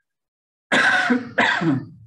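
A man coughing twice in quick succession, starting a little past halfway through.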